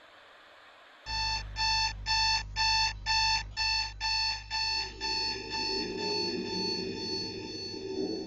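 Digital alarm clock going off: a rapid run of electronic beeps, about three a second, starting about a second in. The beeps fade in the last few seconds as a low drone rises underneath.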